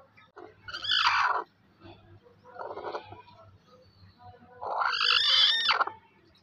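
Broody hen calling three times; the last call, near the end, is the longest and loudest.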